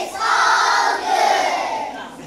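A large group of young children shouting together in unison, in two loud surges with a short break about a second in.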